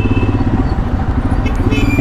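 Royal Enfield Himalayan's single-cylinder engine running at low revs in slow traffic, a steady, evenly pulsing low rumble.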